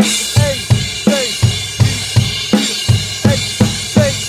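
Yamaha drum kit played in a steady driving beat: Sabian HHX crash cymbals struck together with bass drum and snare on every beat, about three hits a second, the cymbals ringing on between strokes.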